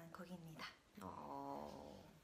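A woman's voice: the end of a spoken sentence, then about halfway through a faint held vocal sound at a steady pitch, lasting about a second.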